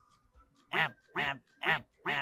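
A man imitating a goose, giving three short nasal honks about half a second apart.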